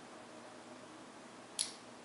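Quiet room tone, with one short, sharp intake of breath about one and a half seconds in.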